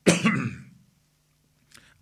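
A man coughs once into his fist: a sudden, harsh burst right at the start that trails off within about half a second.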